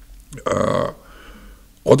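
A man's single short, throaty vocal noise lasting about half a second, starting about half a second in, between spoken phrases.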